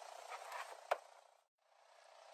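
Steady faint background noise with one sharp click about a second in; the sound drops out completely for a moment near the end.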